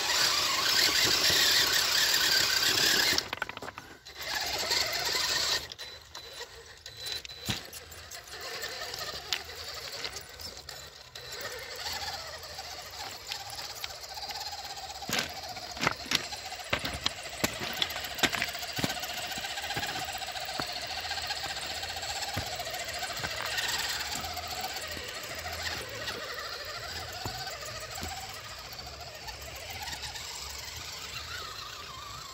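Electric motor and gearbox of a Traxxas TRX-4 RC crawler whining, the pitch wavering with the throttle, over the clicking and scraping of its tyres on rock. The first five seconds are louder and noisier, then the whine runs quieter with scattered sharp clicks.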